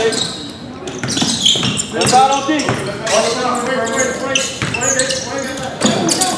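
A basketball being dribbled on a hardwood gym floor, short bounces among raised voices of players and spectators calling out.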